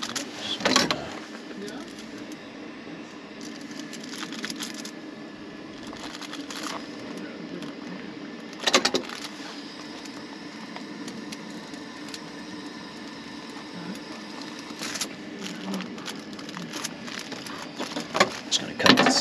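A chef's knife cutting pizza dough and parchment paper on a wooden cutting board, with the paper rustling. There are a few sharp knocks of the blade on the board, the loudest about halfway through, over a steady low hum.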